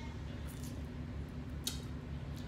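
Close-miked eating sounds: chewing with a couple of short wet mouth clicks, about half a second in and again near the end, over a steady low hum.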